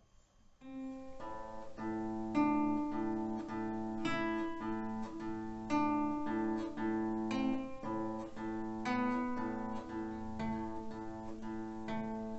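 Acoustic guitar playing a piece: plucked notes begin about a second in, with a melody moving over a repeated bass note.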